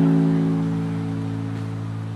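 The final guitar chord of a song, left ringing and slowly fading out.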